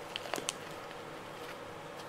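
Faint pattering and crumbling of loose potting mix being pressed into a plant pot by hand. A few light ticks come in the first half second, then only faint steady room noise.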